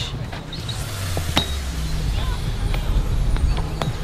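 Sneakers on a metal railing: a few sharp clinks as feet land and shift on the tubular rail, over a low steady outdoor rumble.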